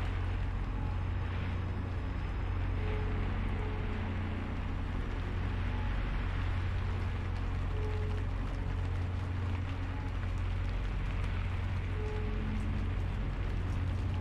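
Steady rain ambience: an even hiss of rainfall over a constant deep low rumble, with a few faint soft held tones now and then.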